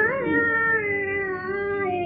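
A woman's solo voice singing a Hindustani raga, holding one long note that rises at the start and then slowly glides down.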